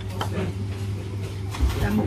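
Restaurant room sound: voices in the background over a steady low hum, with a few light clicks and a short spoken word near the end.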